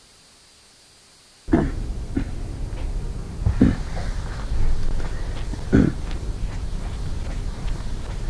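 Very quiet for the first second and a half, then a felt chalkboard eraser being rubbed across a blackboard: a rough scrubbing sound with several louder strokes.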